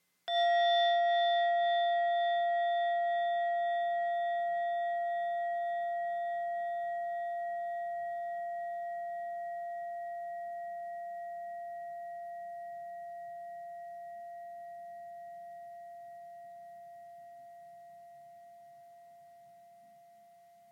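A singing bowl struck once, then ringing in one long, slowly fading tone with several overtones, still faintly sounding near the end. It is struck to mark a period of silent meditation.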